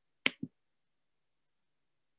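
Two short, sharp clicks about a fifth of a second apart, near the start, with silence around them.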